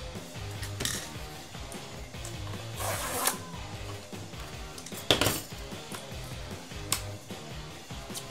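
A few short rustles of a paper mailer envelope being handled and pulled open, over low background music.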